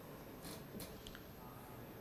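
Quiet pause: faint steady background hiss with two soft, brief noises, about half a second in and just before the one-second mark.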